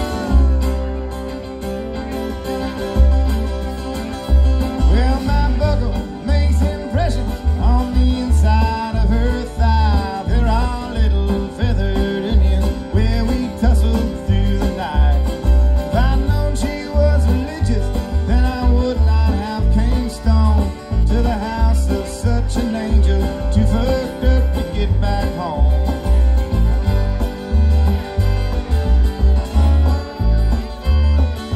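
Live jamgrass band playing: a bowed fiddle and two strummed acoustic guitars over an upright bass plucking a steady beat.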